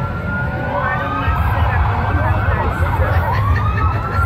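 A siren wailing, its pitch sweeping up and down in slow overlapping glides, over a steady low rumble.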